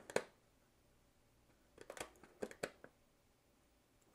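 Faint clicks and handling noise from an auto-darkening welding helmet as its small delay-time slide switch is moved to the long setting: one click at the start, then several quick clicks about two seconds in.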